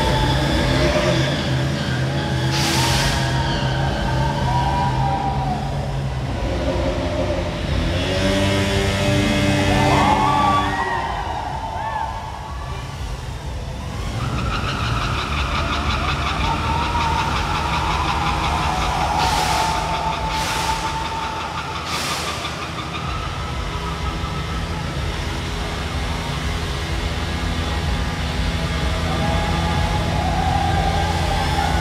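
Bajaj Pulsar stunt motorcycles revving hard and holding high revs through wheelies and burnouts, with a brief drop in engine noise partway through.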